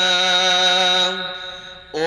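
A young man's solo voice chanting Islamic dhikr into a handheld microphone, holding one long steady note that fades away in the second half, with the next phrase starting right at the end.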